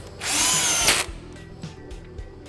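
Electric screwdriver driving a screw that fastens a woofer driver into a loudspeaker cabinet: one short run of just under a second, its whine rising in pitch as the motor spins up and then holding.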